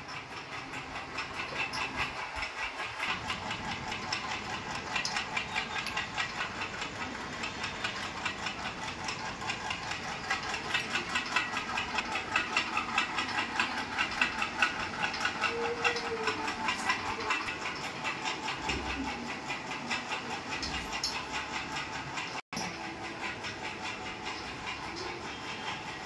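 A steady mechanical clatter, a rapid even ticking of about five a second over a hiss, running without a break.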